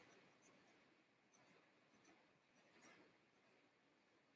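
Very faint scratching of a marker pen writing small words on flip-chart paper, barely above silence, with scattered light ticks of the pen tip.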